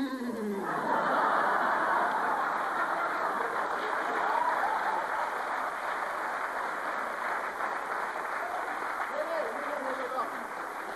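A theatre audience laughing and applauding. It swells within the first second and carries on steadily, easing slightly toward the end.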